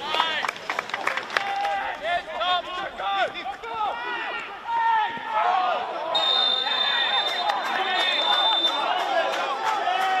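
Players shouting to each other on an open football pitch. About six seconds in, a referee's whistle sounds one long steady blast lasting about two and a half seconds.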